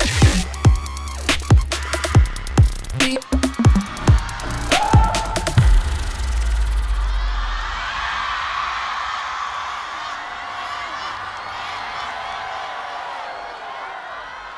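Bass-heavy electronic dance track ending with a run of sharp, hard-hitting accents and deep bass. About halfway through the music stops and a live audience cheers, the cheering slowly fading.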